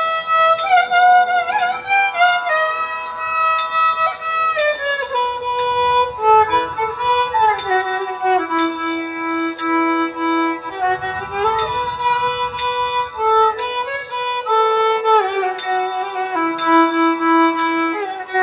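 Violin played in Carnatic style, a melody in raga Ananda Bhairavi: held notes joined by slides and wavering ornaments, settling on longer low notes near the middle and near the end.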